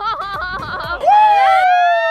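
Laughter, then from about a second in a long, held high tone that slowly falls in pitch.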